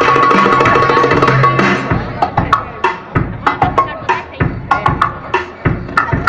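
Belly-dance music: a full arrangement with a held melody stops about two seconds in and gives way to a darbuka (derbak) solo, single hand-drum strikes in an uneven rhythm, several a second, some deep and some sharp and ringing.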